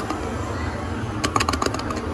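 Steady arcade background din, with a quick run of sharp clicks in the second half as the claw machine's claw drops and closes on a plush prize.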